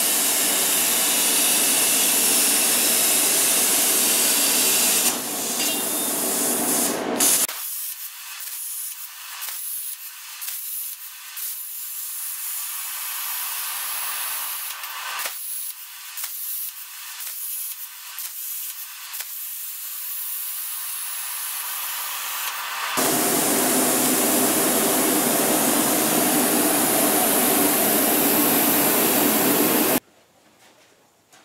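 Hypertherm Powermax 45 plasma torch on a CNC table cutting steel plate: a loud, steady hiss of the arc and air jet. For a long stretch in the middle the hiss turns thinner and higher, broken by repeated short crackles, before the full hiss comes back for the last several seconds.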